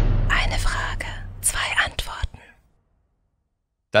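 Segment intro jingle: a deep boom under a whispered voice, dying away about two and a half seconds in, followed by silence.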